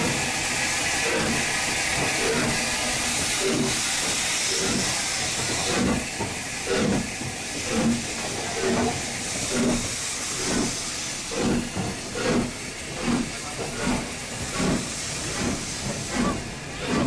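Steam locomotive 30926 Repton, a three-cylinder Schools class 4-4-0, pulling away: a loud steady hiss of steam from the cylinder drain cocks, then from about six seconds in the exhaust chuffs start, a little under a second apart and quickening as the train gathers speed.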